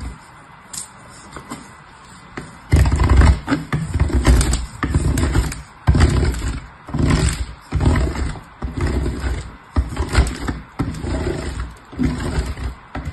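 A bar of soap grated on a metal box grater: a rough rasping scrape with each stroke. The strokes come about once a second, loud from about three seconds in, after a quieter start with a few light scrapes.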